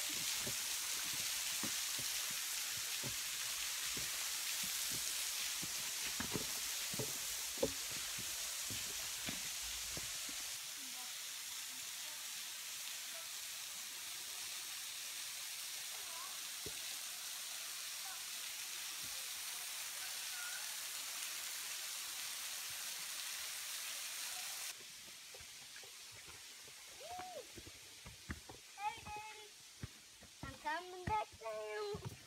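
Steady hiss of a thin waterfall's water falling over a rock overhang and splattering on the rocks below, with scattered light clicks of footsteps on rock. The hiss cuts off sharply about 25 seconds in, leaving quieter surroundings with brief faint voices near the end.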